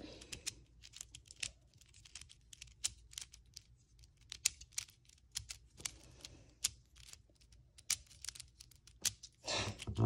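Tiny GAN speed cube turned in the fingers: an irregular run of light plastic clicks, several a second, as its layers are twisted. A louder rustle comes near the end.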